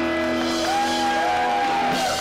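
Live garage-rock band holding out a final chord, the electric guitar's low notes ringing on. About a third of the way in, a higher held tone slides in over it and stays.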